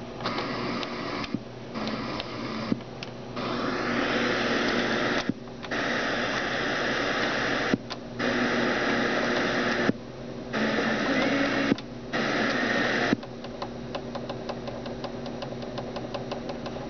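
Sony CFD-F10 boombox's FM radio being tuned down the band: loud static hiss between stations, cut by short silences about every two seconds as the tuning steps on. In the last few seconds the hiss drops and a fast, even run of faint ticks comes through.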